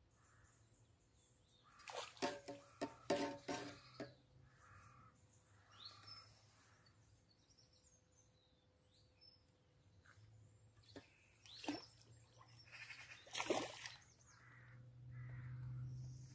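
Outdoor birds calling, with a run of short, harsh, crow-like caws about two to four seconds in, fainter chirps after, and another loud call shortly before the end. A low, steady hum grows louder near the end.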